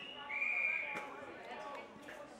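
Umpire's whistle blown in a short, clear single blast, followed about a second in by one sharp thud, with players' voices calling in the background.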